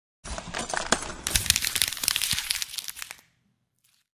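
Breaking-debris sound effect: a dense run of cracks and small clattering pieces that starts just after the opening, is loudest through the middle, and stops suddenly a little over three seconds in.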